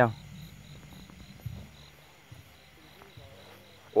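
Crickets chirping in a steady, evenly pulsed high trill, with faint low rustling and a light knock about a second and a half in.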